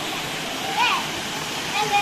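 Steady rush of churning swimming-pool water with splashing from a child's kicking, and brief high-pitched children's voices in the background.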